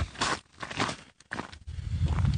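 Irregular crunching and rustling of footsteps and movement over dry ground and brush close to the microphone.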